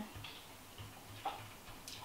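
Quiet room tone with a few faint, short ticks.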